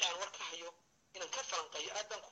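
Only a person speaking: two stretches of talk with a short pause about halfway through.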